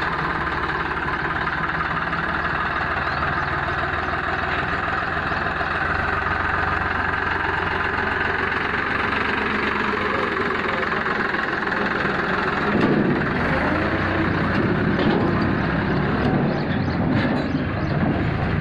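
New Holland 3630 TX Super tractor's three-cylinder diesel engine with inline fuel-injection pump, running steadily at idle. About thirteen seconds in it grows a little louder and deeper.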